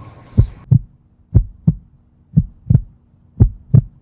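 Heartbeat sound effect: four double thumps in a steady lub-dub rhythm, about one pair a second, over a faint steady hum.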